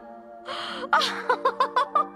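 A woman's gasp followed by a quick run of about six short, high giggles, over steady background music.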